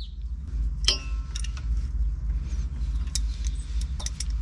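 A few sparse, light metallic clicks of a spanner working a bolt on an engine that is not running, as the bolt is tightened. A low steady rumble underneath.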